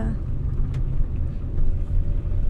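Steady low rumble of a car driving, heard from inside the cabin: engine and road noise.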